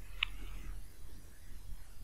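Quiet room tone with a steady low hum from the recording setup and one faint short click about a quarter second in.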